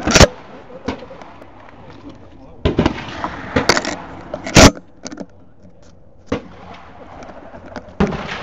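Shotgun shots on a clay-target range. The two loudest come right at the start and about four and a half seconds in, with quieter shots and knocks between them.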